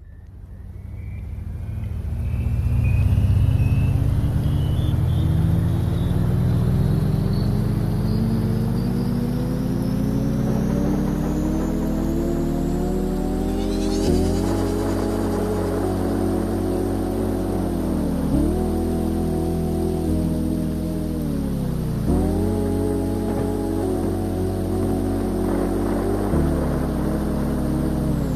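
Added soundtrack: one pitched, engine-like sound rising steadily in pitch for about fourteen seconds, then holding level with two brief drops and recoveries.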